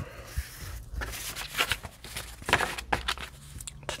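Paper rustling and brushing under hands as a freshly glued paper piece is smoothed flat on a cutting mat and handled, in a few short irregular scrapes.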